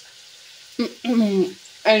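A woman speaking over a faint steady sizzle of potato chips deep-frying in hot oil.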